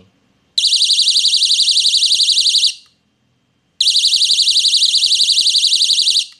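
Magnetic door/window entry alarm sounding a loud, high-pitched, rapidly warbling beep in two bursts of about two seconds each, with a short gap between them. It is set off by the magnet strip being moved away from the alarm unit, as an opened door or window would do.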